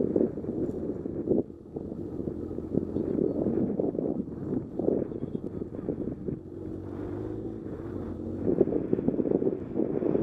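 Wind buffeting the microphone of a motorcycle-mounted camera while riding, with the motorcycle's engine running steadily underneath.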